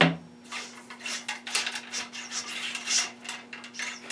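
Wooden ramrod with a solvent-wet cleaning patch being worked back and forth in a muzzleloader's bore: a knock at the start, then a run of scraping, rattling strokes, about two a second.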